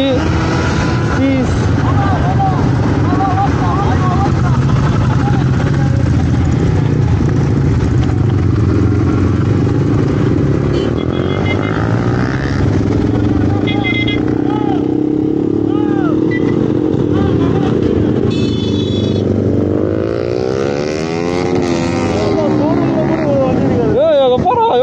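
Motorcycle engine running steadily under way with road and wind noise. Short high beeps sound three times around the middle, and the engine note rises and falls near the end.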